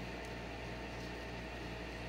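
Steady background hum and hiss of a small room, like a fan or air conditioner running, with no distinct handling sounds.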